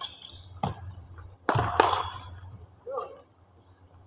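Badminton rally: sharp racket strikes on the shuttlecock, the loudest pair about a second and a half in, with brief high squeaks from shoes on the court floor.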